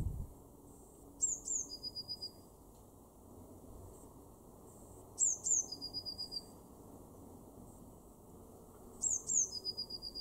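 Blue tit singing three songs about four seconds apart, each two thin, high notes sliding downward followed by a short, quick trill on a lower note.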